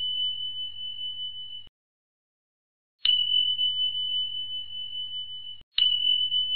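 A bell-like ding sound effect: a single clear high tone, struck sharply, that rings steadily for about two and a half seconds, fading a little, then cuts off short. It stops early on, is struck again about three seconds in, and once more near the end.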